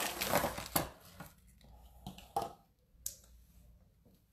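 Rustling and handling of craft materials on a wooden tabletop as things are gathered together, with a sharp tap about three-quarters of a second in and a few light knocks and clicks later.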